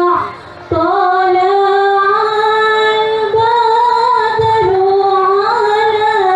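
A woman singing long, held notes that bend slowly up and down in pitch. The voice breaks off briefly about half a second in, then carries on.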